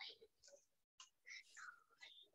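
Near silence on a video-call line: a few faint, whispered voice fragments, with the audio cutting out completely for an instant about a second in.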